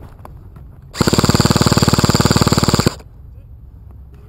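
Airsoft gun firing one full-auto burst of about two seconds, at roughly twenty shots a second. It starts about a second in and cuts off sharply.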